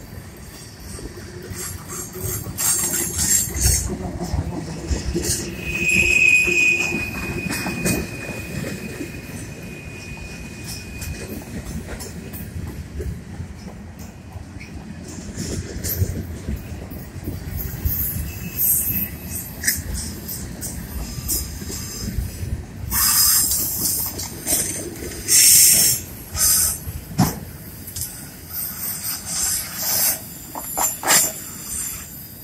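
Freight cars of a long manifest train rolling past on a curve: a steady rumble of steel wheels on rail, with a held wheel squeal about six seconds in and loud high screeching from the wheel flanges on the curve near the end.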